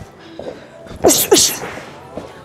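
A boxer's two quick, sharp hissing exhales with a slight voiced grunt, about a second in, one breath forced out with each punch of a shadow-boxing combination.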